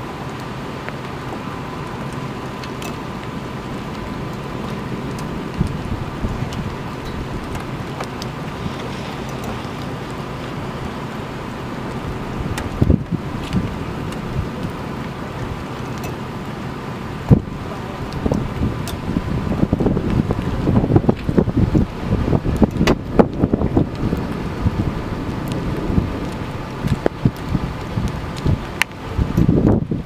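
Storm wind buffeting the microphone over a steady hiss of rain, the gusts growing stronger and more ragged in the second half, with a few sharp knocks.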